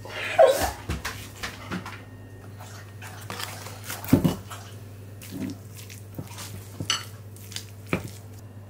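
Handling sounds of a dog's dinner being made up in a ceramic bowl: a paper bag rustling as powder is poured, and a spoon knocking and scraping against the bowl, with a heavier thud about four seconds in. A short pitched sound comes half a second in.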